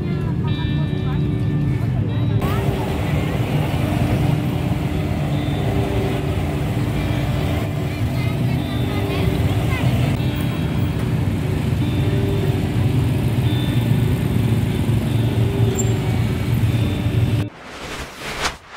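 Busy street ambience: motorbike engines running in slow, crowded traffic, with people talking all around. It cuts off sharply near the end.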